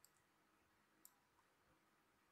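Near silence with two faint computer-mouse clicks about a second apart.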